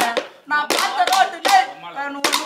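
Bamboo sticks struck on logs and against each other as hand percussion for a Tamil gana song, about two strikes a second, with a man's voice singing over them.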